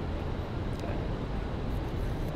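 Steady low rumble of outdoor traffic ambience. Near the end come a few faint rustles as fingers start to pull the paper tear-strip seal on a phone box.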